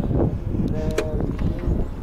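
Remote central locking on a Peugeot 407: a sharp click about a second in, set inside a brief steady hum, over low wind rumble on the microphone.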